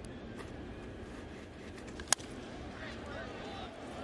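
A single sharp crack of a baseball bat meeting a pitch about two seconds in, the ball fouled off out of play, over a low steady ballpark background.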